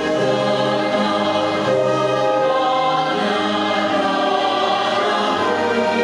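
A national anthem played from a recording: a choir singing over an orchestra in slow, held chords, with a bass line that moves step by step.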